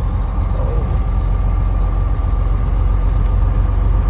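Semi truck's diesel engine running steadily at low road speed, with road noise, heard from inside the cab as a continuous low drone.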